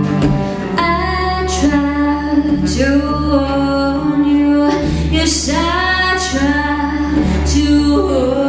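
A woman singing with long held notes over her own strummed acoustic guitar; the guitar plays alone for about the first second before the voice comes in.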